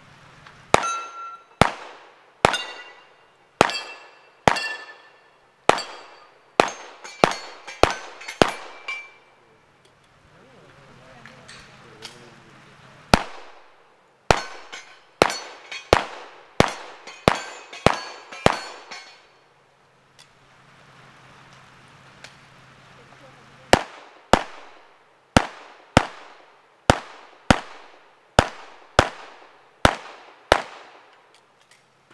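Rapid gunfire in three strings of about a dozen shots each, one to two shots a second, with pauses of several seconds between strings. In the first string several shots are followed by a bright metallic ring of hit steel targets.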